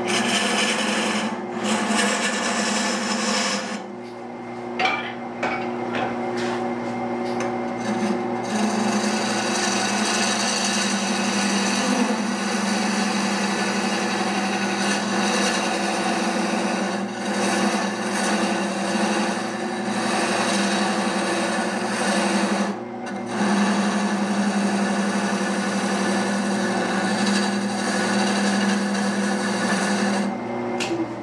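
Wood lathe running with a cutting tool scraping into the spinning wood, deepening the cut. A steady motor hum sits under the rasping cut, which pauses briefly a few seconds in and again about three-quarters of the way through.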